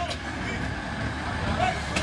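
Steady outdoor roadside background noise with a low rumble, probably distant traffic, and faint far-off voices.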